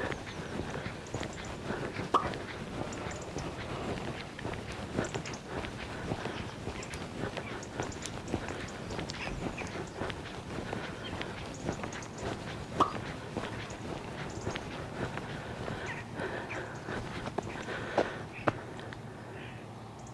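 Footsteps walking on a tarmac lane over steady outdoor background noise, with a few short, sharper sounds about two seconds in, near the middle and near the end.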